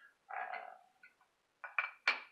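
A brief sound early on, then a few quick sharp knocks near the end as a roll of tape is set down on the scale's wooden platform.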